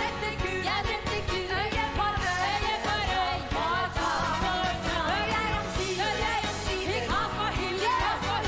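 Women singing an upbeat stage song-and-dance number over instrumental accompaniment with a steady beat.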